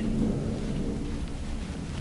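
Room tone: a steady low rumble with no distinct events.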